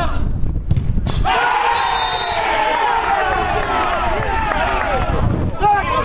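A football is struck with a sharp thud about a second in, followed by several voices of players and spectators shouting and calling over one another for a few seconds.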